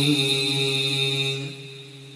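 A man's voice in melodic Quran recitation, holding one long steady note at the end of a phrase, then fading out about one and a half seconds in.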